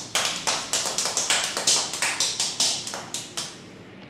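A rapid, uneven run of about a dozen sharp taps or clicks, lasting about three and a half seconds, then stopping.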